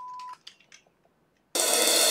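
A steady single-pitch test-tone beep, the tone that goes with colour bars, cutting off about a third of a second in. After a second of silence, music starts about one and a half seconds in with a bright, cymbal-heavy wash.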